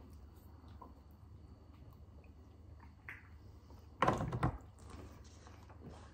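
Quiet room with faint small handling noises as tequila shots are drunk and lemon wedges bitten, broken by one short, louder burst of noise about four seconds in.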